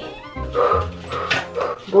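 A woman laughing, her voice rising and falling in short outbursts over background music.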